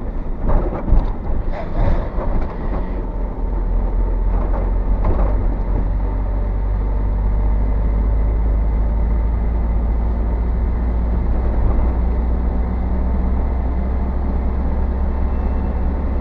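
Low, steady rumble of a vehicle's engine and tyres heard from inside the cab while driving, with a few knocks and rattles in the first three seconds as it goes over the rough, wet road.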